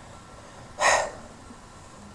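A single short, sharp breath from a woman, about a second in, over quiet room tone.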